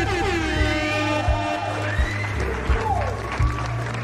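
Background music: sustained melodic tones, with a few sliding notes, over a steady low bass.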